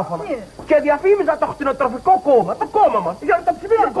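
Voices talking and laughing, with no other sound standing out.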